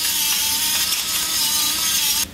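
Hand-twisted pepper mill grinding black peppercorns: a steady, continuous grinding.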